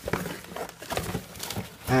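Plastic packing material crinkling and rustling against cardboard as it is pulled out of a shipping box.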